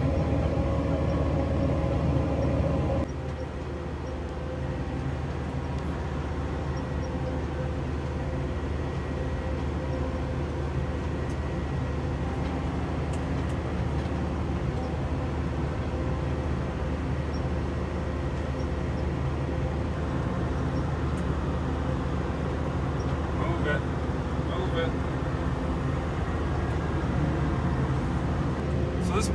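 Engine of a self-propelled farm machine heard from inside the cab, a steady low drone. About three seconds in it drops a little in level, then runs on evenly.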